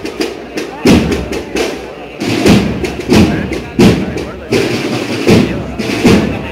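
Procession band's drums beating a slow marching cadence, one stroke about every 0.7 s with a heavier one every second and a half or so, over the chatter of a crowd.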